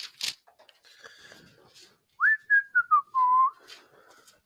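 A person whistling a short tune of a few notes that step downward, about two seconds in. Before it comes soft rustling of pages.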